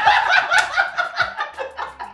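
People laughing hard together in quick bursts of ha-ha, loudest at the start and dying down into shorter bursts.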